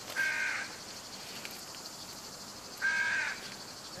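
A crow cawing twice, two single harsh caws about two and a half seconds apart, over a steady faint high hiss.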